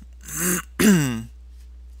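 A man clears his throat once: a short breathy rasp, then a louder voiced grunt falling in pitch, about a second in all.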